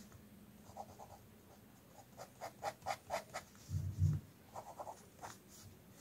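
Sakura Pigma Micron 01 fine-tip ink pen scratching short strokes on sketchbook paper, in quick runs of several strokes, with a soft low thump just past the middle.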